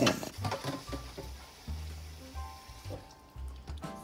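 A kitchen tap runs into a saucepan of rice being rinsed, then stops about three seconds in. Background music with a low bass line plays throughout.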